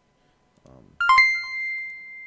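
Electronic notification chime of a Facebook streaming alert: two quick ding notes about a second in, the higher tone ringing on and fading slowly.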